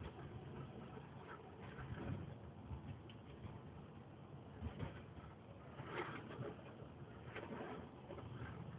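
Faint car-cabin noise while driving over deep snow: a low steady rumble with a few brief, irregular louder knocks as the car rides over the snow.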